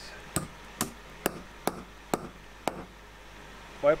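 Hammer tapping a 10 mm wooden dowel into a drilled hole in an oak leg joint: six sharp taps about half a second apart, stopping about three seconds in.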